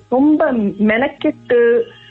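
Speech only: a person talking in Tamil in short phrases with brief pauses.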